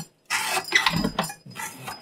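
A CPM 15V steel knife blade making one rasping cutting stroke on a weighted cutting-test rig. The stroke starts just after a brief silence, lasts about a second, then fades.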